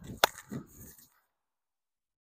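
A single sharp crack of a hurley striking a sliotar about a quarter second in, a shot hit with a twist of the wrists to put side spin on the ball.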